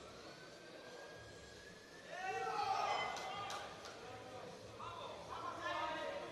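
Voices shouting in a large hall, loudest from about two seconds in and again near the end: shouts of encouragement for a lifter during a heavy barbell squat attempt. A couple of sharp knocks or claps come around the middle.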